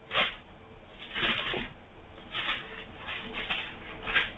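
Pages of a Bible being flipped: a series of short papery rustles, about five in four seconds.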